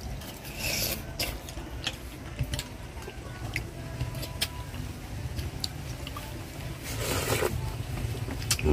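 Chopsticks clicking and scraping against small ceramic bowls as people eat, with a sip or slurp of soup broth from a bowl about seven seconds in.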